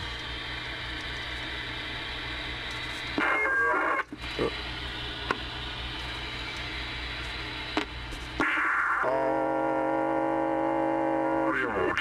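Radio audio from a speaker: steady static hiss cut off above the voice range, with a louder burst about three seconds in. From about nine seconds a steady held tone with many overtones comes in, lasting nearly three seconds.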